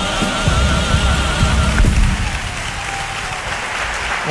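A carnival comparsa choir, with guitars, holds the final chord of its song with a wavering vibrato. The chord cuts off sharply about two seconds in, and audience applause carries on to the end.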